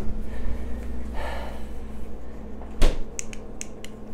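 Refrigerator door swung shut, closing with one sharp thump a little before three seconds in, followed by a few faint light clicks, over a low steady hum.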